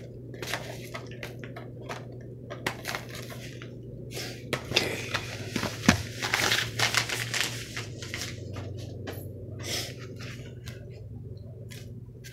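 A padded mailer envelope being handled and opened: irregular paper rustling and crinkling with sharp clicks, busiest in the middle, over a steady low hum.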